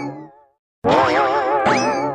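Cartoon comedy sound effect: a wobbly, vibrato musical tone with a springy rising 'boing' glide. It fades out in the first half-second, then plays again from the start just under a second in.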